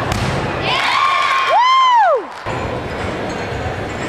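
A gymnast's feet thud onto the landing mat at the end of a balance beam dismount, followed by cheering, with one loud high 'whoo' that rises and falls about a second and a half in, then cuts off suddenly.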